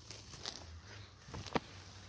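A hand working among plastic-bagged mushroom substrate blocks and pulling an oyster mushroom off one: faint rustling with a few soft crackles and snaps, about half a second in and twice near the middle.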